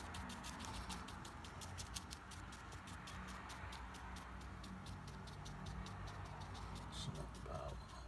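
Bristle brush dabbed rapidly on watercolour paper, stippling paint: a run of faint quick taps and scratches, several a second.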